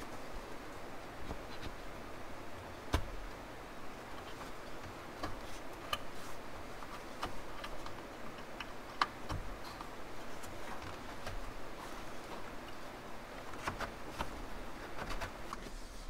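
Scattered light clicks and taps with faint handling rustle as a bow-style headliner's cardboard rear edge is pressed into the roof's retainer clips; the sharpest click comes about three seconds in.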